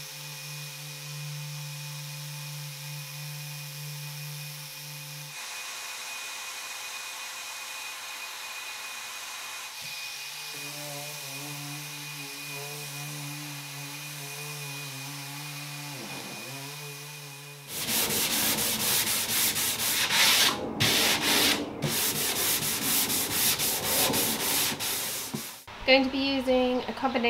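Electric orbital sander running steadily on wood, a level motor hum. In the last third a much louder, rough rubbing noise with rapid repeated strokes takes over, then stops just before the end.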